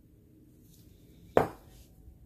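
A single sharp knock of a hard object set down on a tabletop, about a second and a half in, with a brief ring after it.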